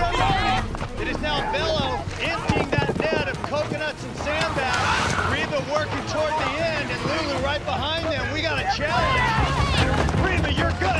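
Several people shouting over one another, with no clear words, over steady background music.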